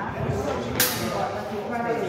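Practice swords striking once in sparring: one sharp clash a little under a second in, ringing briefly.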